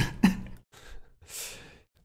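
A man sighing, with a short voice sound at the start followed by breathy exhales, the longest in the second half.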